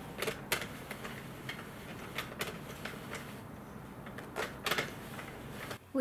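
Irregular light plastic clicks and taps from a Sentro knitting machine's needles being handled by hand while yarn is cast on.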